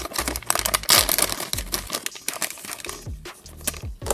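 Shiny plastic blind bag crinkling and tearing as it is ripped open by hand, loudest about a second in, over background music.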